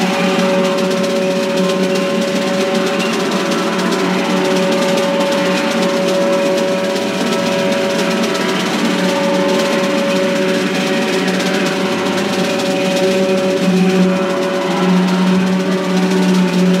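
Live free-improvised jazz: horns holding long, overlapping tones over drums in a dense, steady texture that swells slightly near the end.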